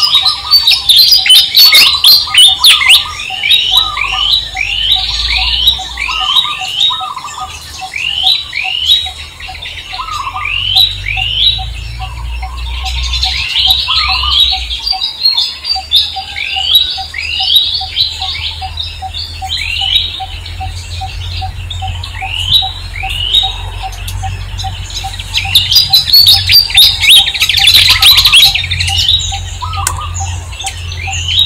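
Birds calling in a dense chorus: many short downward-sliding chirps, several a second, busiest and loudest near the start and near the end. Beneath them runs an even ticking and a low rumble.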